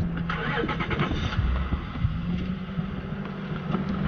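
Vehicle engine running steadily, heard from inside the cab as a low hum with a steady tone. Rustling and small knocks come over it in the first second.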